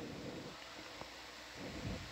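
Low, steady background hiss with no voices, broken by one faint click about halfway through and a soft low thump near the end.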